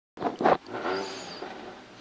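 Rally car engine running at idle, heard from inside the cabin, with two short loud knocks in the first half second.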